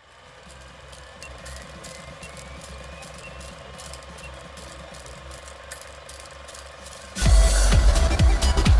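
Old film-projector clatter sound effect: a fast run of light clicks over a steady hum. About seven seconds in, an electronic dance track comes in loudly with a heavy bass beat.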